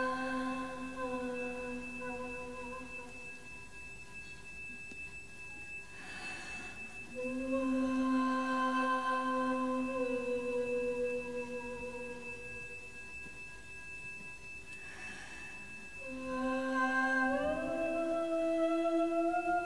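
A woman's voice singing long held notes into a microphone in three slow phrases, over a faint steady electronic drone; a short rush of noise comes before the second and third phrases, and the pitch rises near the end.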